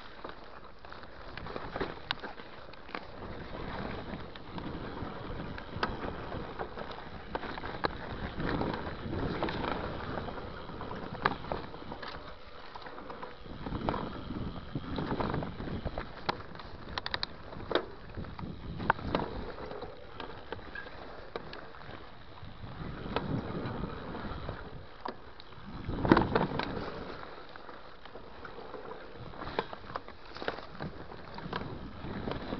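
Mountain bike riding down a rough dirt and rock downhill trail: tyres rolling over the ground, with frequent clicks and knocks from the bike, rising and falling in swells. The loudest knock comes about 26 seconds in.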